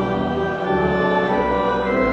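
Congregation singing a hymn in unison with organ accompaniment, in steady held notes.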